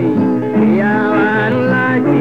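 Ethiopian gospel song (mezmur): a voice singing a winding melody over steady instrumental backing.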